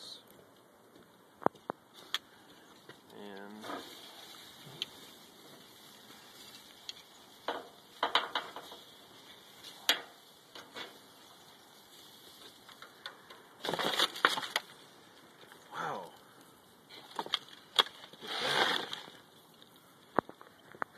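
Handling noises from lifting a smoked turkey out of a steel drum smoker into an aluminium foil roasting pan: scattered sharp clicks and knocks and several short rustling, crinkling bursts, the loudest about two-thirds of the way in and near the end.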